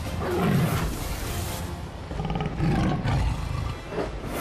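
A tiger's growls and roars, a dubbed sound effect, come several times over dramatic background music.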